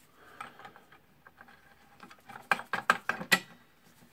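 Small parts clicking and rattling on a cordless circular saw as a flat washer and fitting are put back on by hand, with a quick run of sharp clicks about two and a half seconds in.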